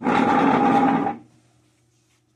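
A scrape of a little over a second: the wooden legs of a Windsor chair dragged as the chair is turned on the floor.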